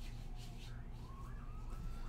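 Quiet room with a steady low electrical hum and the faint rustle of trading cards being handled. A faint tone slowly falls and then rises in pitch behind it.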